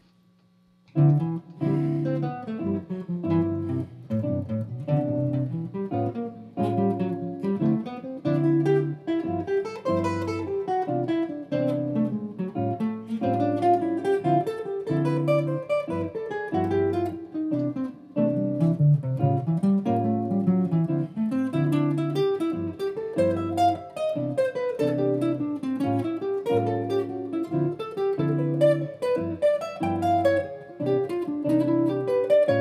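Archtop jazz guitar improvising steady runs of eighth-note single-note lines that climb and fall across the fingerboard, starting about a second in. Sustained chords repeat underneath, cycling through a Dm7–G7–Cmaj7–A7 progression while the player shifts position each time the sequence comes round.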